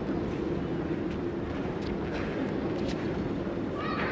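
Steady background murmur of a large sports hall with spectators, with a few faint taps. A shouted voice, the kind of kiai an attacker gives, starts right at the end.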